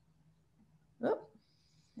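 Near silence, then about a second in a single short spoken exclamation, "Oh," rising in pitch.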